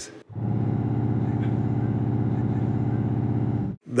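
The lowest C of a pipe organ's 32-foot Contra Bombarde reed stop, played on its own: a steady, buzzing low drone with a rapid flutter running through it. It starts about a quarter second in, holds for about three and a half seconds, and stops abruptly.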